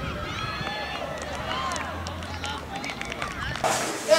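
Distant shouts and calls of players and spectators across an open sports field. Near the end it cuts to much louder voices talking in an echoing room.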